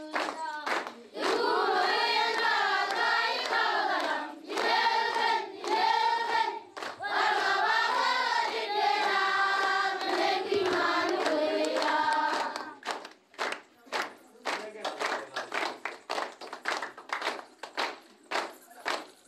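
A group of children singing or chanting together in unison. Rhythmic hand claps come just before the singing starts and take over near the end, once the voices stop.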